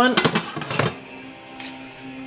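Corn husk crackling and rustling as a steamed tamale is peeled open over a plate: a quick run of crisp crackles and clicks in the first second. A faint steady low tone follows.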